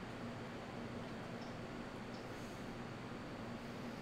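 Electric room fans running: a steady hiss with a low hum underneath.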